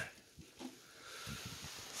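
Faint handling sounds as a robot vacuum is pushed onto its charging dock: a few light knocks and some rustling.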